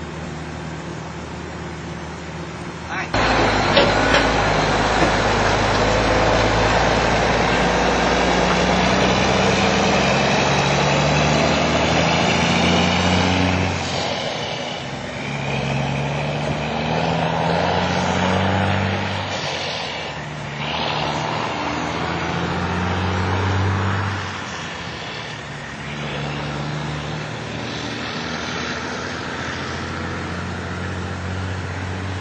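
Steady vehicle noise that starts suddenly a few seconds in, with a deep rumble, then eases after the middle. Muffled low voices run underneath it.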